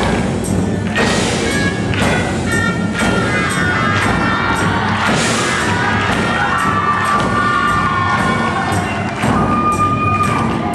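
Shrine oriental band playing: nasal reed horns carry a melody over a steady drum beat of about two strokes a second and a sousaphone bass line. The audience cheers over the music about a second and five seconds in.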